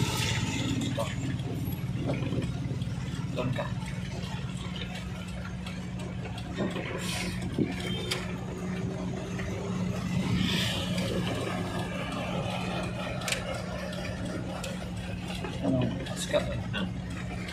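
An engine idling steadily with a low hum, with a few faint clicks and faint voices in the background.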